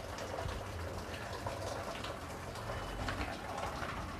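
Quiet room tone: a steady low hum with faint, scattered small sounds and no clear event.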